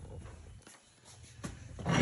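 Faint handling noise from a handheld camera being carried: a low rumble and rustle with a single light click about one and a half seconds in.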